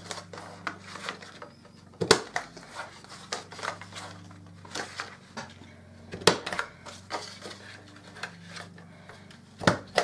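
Handheld corner rounder punch snapping through card: three sharp clicks about four seconds apart, with lighter handling and paper sounds between.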